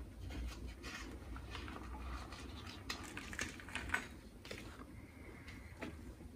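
Faint crackling and rustling of loose potting soil and a small plastic nursery pot being handled while a pine seedling is set into a terracotta pot, with scattered soft clicks and taps.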